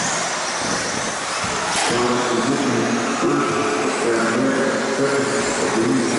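Several 2wd stock-class radio-controlled electric buggies racing on an indoor carpet track: a steady rush of motor and tyre noise, with a wavering motor whine coming in about two seconds in, echoing in a large metal shed.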